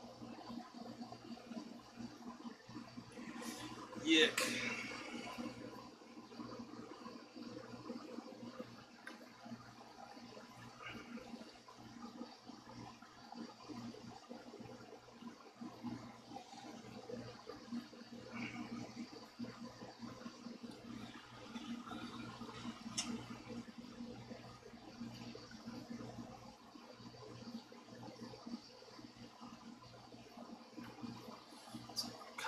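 Microfibre cloth rubbing and swishing over the body and neck of a stringless Peavey Generation EXP electric guitar as the dust is wiped off, with a few small handling clicks. About four seconds in there is one loud knock. A steady low hum runs underneath.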